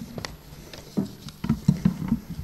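A quick run of soft knocks and clicks, loudest and densest in the second half: handling noise on a lectern, picked up close by its microphones.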